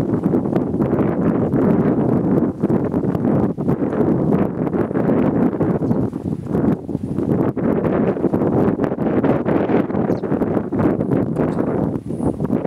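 Horse-drawn sickle-bar mower clattering steadily as the mule team pulls it through hay, its cutter bar chattering, starting abruptly at the outset.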